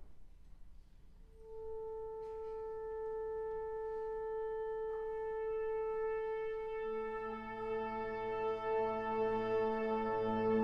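A wind ensemble sustains a single pitch. One steady held note enters about a second in, and around seven seconds in lower instruments join it on the same note in lower octaves, so the sound grows fuller.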